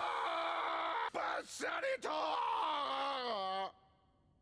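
A man's voice from the anime crying out in pain in long, drawn-out wails. The last wail falls in pitch and cuts off sharply near the end.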